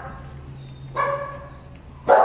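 A dog's short whine about a second in: one steady high note lasting about half a second, over a low steady hum.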